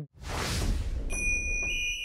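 Logo intro sound effect: a whoosh with a low rumble under it, joined about a second in by a high, steady ringing tone.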